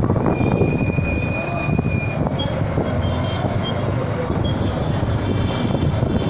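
Motorcycle taxi riding through traffic: steady, loud engine and road noise, with a thin high whistle over the first two seconds and a few short high beeps later.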